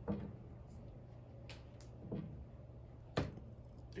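A hand lifting small test objects out of a clear plastic tub of water: a few faint knocks and drips, the sharpest about three seconds in, over a low steady hum.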